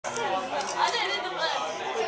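Chatter: several people's voices talking over one another in a busy room.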